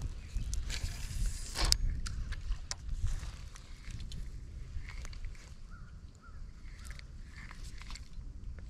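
Cast with a spinning rod and reel: fishing line hisses off the spool for about a second and ends in a sharp click as the cast finishes. Low rumble and a few small clicks follow.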